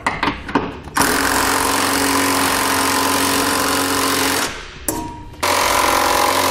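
Cordless electric ratchet running a nut down onto a trailer hitch's frame bolt. One steady run of about three and a half seconds, a brief burst, then another run starting shortly before the end.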